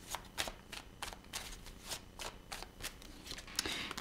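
A tarot deck being shuffled by hand: a faint, quick run of soft card clicks and flicks, several a second.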